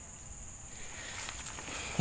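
Water sloshing and light splashing from a person moving waist-deep in a muddy river, growing louder about a second in, over a steady high-pitched drone of crickets or other insects.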